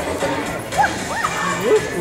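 A small dog gives a few short yips and whines over background music and crowd chatter.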